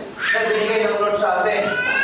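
Speech: a preacher's voice talking without pause, its pitch rising near the end.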